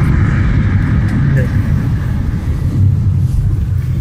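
Car engine hum and road noise heard from inside a moving car: a steady low drone with a constant rush of tyre noise.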